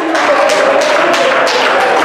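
A man preaching into a microphone while the congregation claps in a steady rhythm, about two claps a second, with music underneath.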